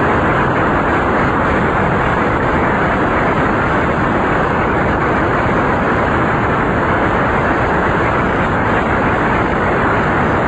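A large audience applauding, dense and steady, keeping up at full strength without letting up.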